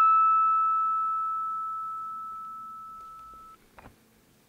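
A natural harmonic on a guitar's high E string, sounded by touching the string over the fifth fret: a pure, bell-like note two octaves above the open E (E6). It rings and fades steadily, then is stopped short about three and a half seconds in, with a faint click just after.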